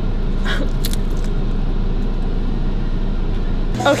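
Steady low rumble of a car's idling engine heard inside the cabin, with a short laugh about half a second in. The rumble stops abruptly near the end.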